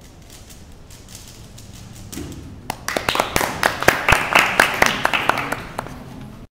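Quiet rapid clicks of a 3x3 puzzle cube being turned, then, from about three seconds in, a small audience clapping loudly for a few seconds before it tails off.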